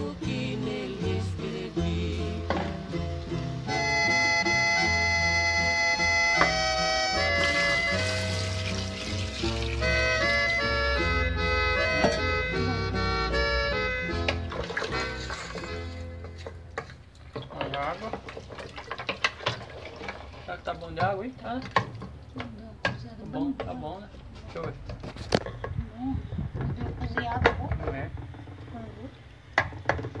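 Background music plays for about the first half and fades out around the middle. After that, a spoon stirs a liquid stew in an aluminium pot, with irregular knocks and scrapes against the metal and wet sloshing.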